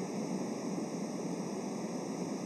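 Steady background hiss with no other sound: the noise floor of a webcam or laptop microphone recording.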